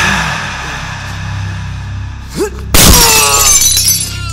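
A glass bottle smashed over a man's head: a loud crash of shattering glass about three-quarters of the way in, over dramatic film music with a low drone.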